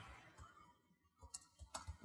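Faint computer keyboard typing: a handful of quick key clicks in the second half, otherwise near silence.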